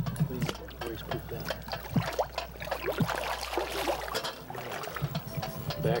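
Water splashing and sloshing as a flathead catfish is let go by hand into the river, a run of short sharp splashes.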